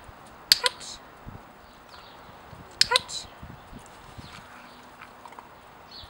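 A dog-training clicker clicked twice, about two seconds apart, each a sharp double click of press and release, marking the puppy's correct response.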